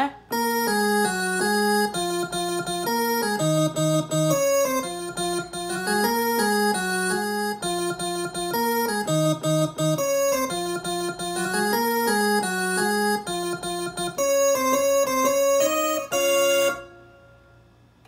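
Electronic keyboard sound, organ- or electric-piano-like, played from an Akai MPK261 MIDI controller. It is the song's solo passage: held chords with a moving top line. The playing stops about a second before the end and the sound fades out.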